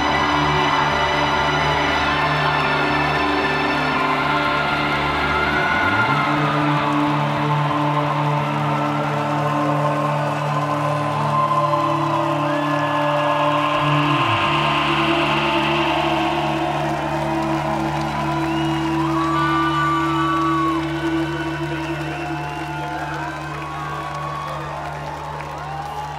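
Live band's synthesizer playing long held chords with no drums. The chord changes twice, and the sound fades over the last few seconds while the crowd whoops and cheers.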